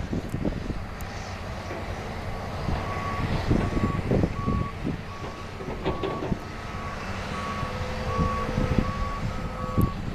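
Reversing alarm on heavy earthmoving equipment, beeping steadily a bit more than once a second from a few seconds in, over the rumble of diesel machinery.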